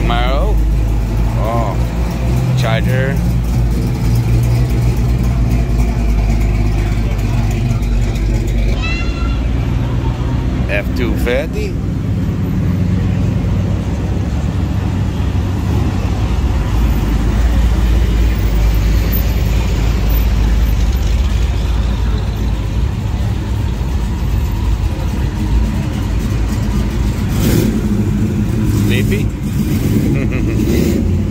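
Classic American muscle-car engines idling and rumbling low and steady as the cars roll past one after another at walking pace.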